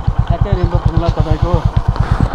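Motorcycle engine idling with an even, rapid putter of about eighteen pulses a second.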